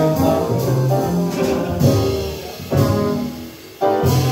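Live small jazz band with trombone to the fore over the rhythm section. About three seconds in the sound thins and fades for a moment, then the whole band comes back in together just before the end.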